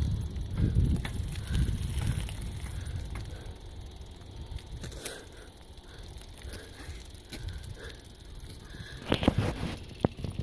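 Low, fluctuating wind rumble on the microphone of a phone carried while cycling, with bicycle tyres rolling over a gravel road and scattered light clicks. A short louder burst of noise comes about nine seconds in.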